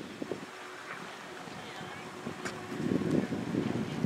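Outdoor ambience of faint distant voices, with wind buffeting the microphone that comes in louder about three quarters of the way through.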